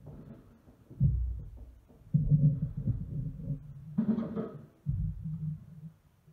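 A few dull, low thumps, each with a low rumble trailing after it, and a brighter knock about two-thirds of the way through, as the drummer handles things at his drum kit.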